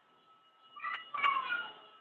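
Two short high-pitched cries, one near the start of the second second and a slightly longer one just after.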